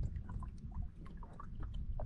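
Low rumble of wind on the microphone over open water, with faint scattered ticks and light knocks.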